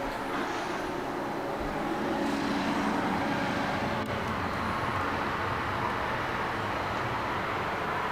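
Steady rumble of road traffic from a nearby main road, a little louder about two seconds in.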